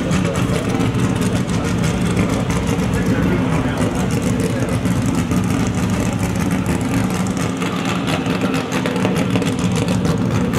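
Steady engine sound from cars running, heard over a busy outdoor background.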